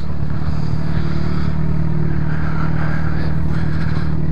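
Motorcycle engine running steadily at low revs, heard from on board the bike as it rolls slowly, with no revving.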